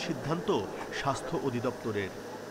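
Indistinct voices of people talking, no clear words.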